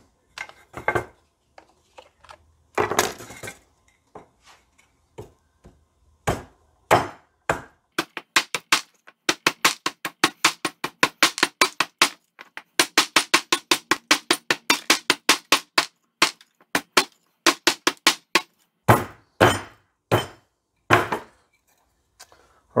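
Hatchet chopping a point on the end of a one-by-two wooden stake held on a scrap block: sharp wood-on-steel chops. A few slow strikes come first, then a fast run of about four a second through the middle with one short break, then a few single chops near the end.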